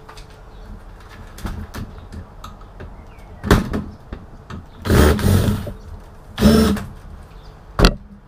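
Cordless drill/driver running in two short bursts of about half a second each, its motor whirring as the bit is tried on motherboard screws that need a flat-blade screwdriver. Clicks and knocks of handling come before the bursts, and a sharp click comes just before the end.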